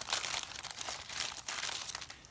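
Clear plastic bag crinkling as hands pull a stack of sticker sheets out of it, a dense run of fine crackles.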